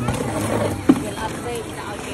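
People talking in the background over steady outdoor noise, with one sharp knock a little under a second in.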